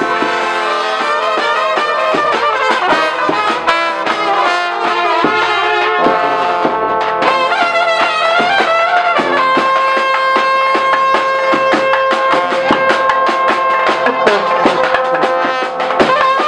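Balkan brass band playing live: horns and a large bass brass instrument carrying a lively melody over a drum beat, with a long held note through the middle.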